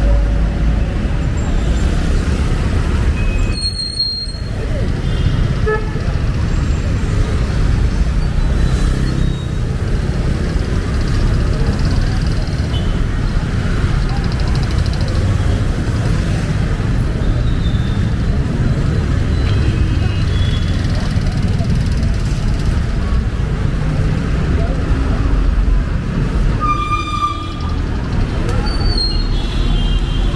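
Busy street traffic: motorcycle, car and bus engines running in a steady rumble, with horns tooting now and then and one horn held for about a second near the end. Passersby's voices mix in.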